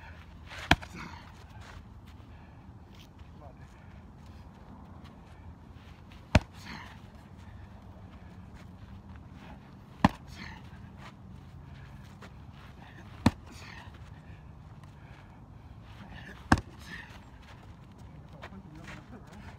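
Strikes landing on a pair of handheld Everlast kick pads: five sharp smacks, a few seconds apart.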